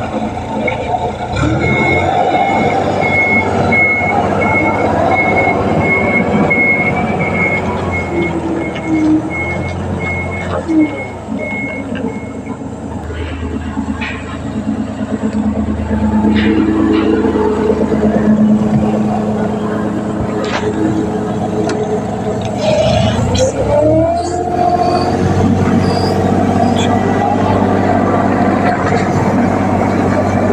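Caterpillar wheel loader's diesel engine running under load, its pitch rising and falling as it is revved. A backup alarm beeps steadily through the first half.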